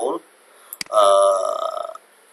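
A man's voice: a clipped syllable at the start, then a single held vowel sound of about a second, like a drawn-out hesitation 'uhh', that fades away before the end.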